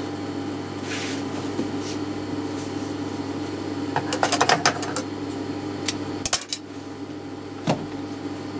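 Steady hum of an industrial sewing machine's motor running idle, not stitching. Over it are scattered clicks and rustles as the cotton fabric and elastic are handled, with a quick cluster of clicks about four seconds in.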